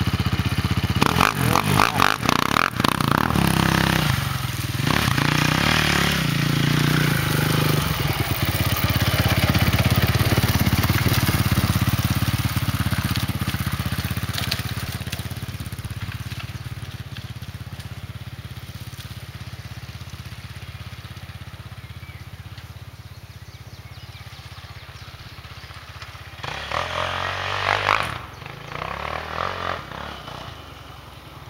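Quad bike engine revving and pulling away, its note rising in pitch in the first few seconds and then fading over many seconds as it goes off; near the end it revs up again in a short louder burst.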